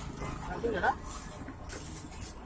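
Metal spatula scraping and tapping on a flat iron griddle, with a short rising cry about half a second in.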